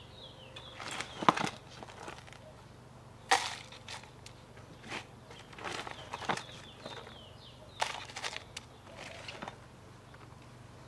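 Bark-chip potting medium scooped with a plastic trowel and tipped into a clear plastic orchid pot: a series of short crunching, rattling scoops, one every second or two.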